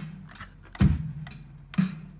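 A sampled drum-kit beat triggered by fingers on a pad controller. The kick and snare alternate about a second apart, with a light hi-hat tick between each.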